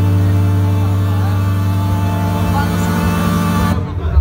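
Electronic music: a steady, held low synthesizer drone made of deep sustained bass tones. It cuts off abruptly just before the end.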